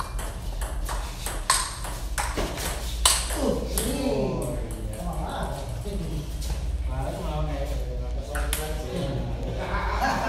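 Table tennis ball clicking back and forth off bats and table in a quick rally for about three seconds, ending on a harder hit, after which men's voices talk.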